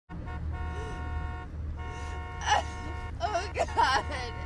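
Car horn sounding in one long steady tone over a low steady rumble. The tone breaks off briefly about a second and a half in, then carries on, and a woman's voice cuts in over it near the end.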